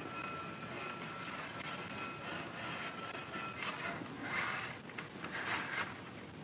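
Faint rasping of a videoscope insertion tube being rubbed hard against an aluminum bar, in three or four short scrapes in the second half over a faint steady high tone. The rubbing scrapes aluminum off the bar rather than damaging the tube.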